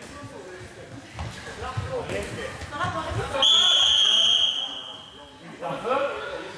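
Referee's whistle blown once, a single long blast of about two seconds, starting midway through, over players' shouts and the knocks of floorball sticks and ball.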